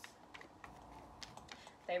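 A deck of tarot cards being shuffled by hand: a run of quiet, irregular card clicks and riffles.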